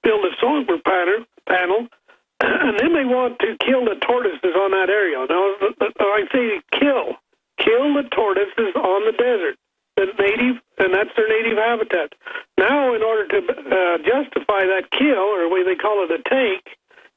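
Speech only: a man talking steadily over a telephone line, the voice thin and cut off at the top, with brief pauses between phrases.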